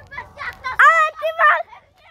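Children's voices shouting excitedly outdoors. Several high-pitched yelled calls come loudest about a second in.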